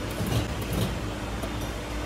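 Hydraulic power pack of a 100-ton coin press running with a steady hum as the ram moves slowly down onto the die.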